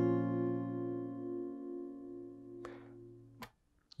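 An A minor chord on an acoustic guitar capoed at the first fret, ringing out and slowly fading after a single strum. It is cut off suddenly about three and a half seconds in, just after a small click.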